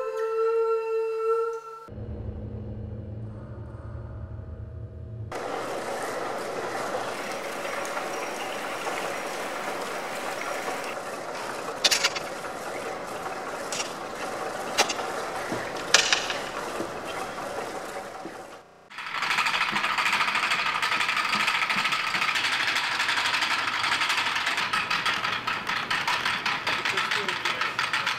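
Wooden gears, belts and pulleys of a large wooden kinetic sculpture running: a dense, steady mechanical clatter with a few sharp knocks partway through.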